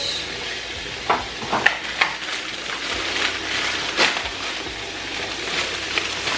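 Kitchen tap running into a stainless steel sink, the water splashing steadily, with a few short crinkles and knocks of plastic fruit boxes being handled under the stream.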